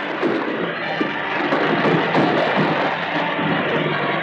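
Orchestral film music from a 1940s serial soundtrack: several instruments holding sustained chords, with the dull, narrow sound of an old recording.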